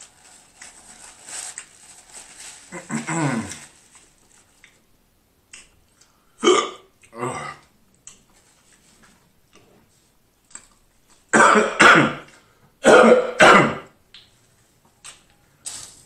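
A man's mouth and throat sounds while eating: faint chewing, then a low burp about three seconds in. After that come short, throaty bursts of breath, two about halfway and four louder ones in two pairs near the end, his reaction to a mouthful of spicy food.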